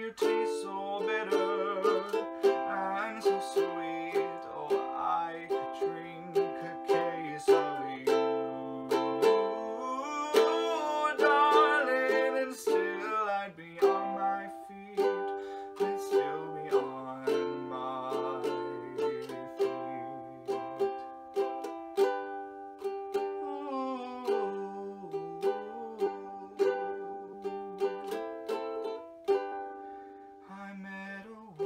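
Ukulele strumming chords in a steady rhythm, each strum ringing on into the next.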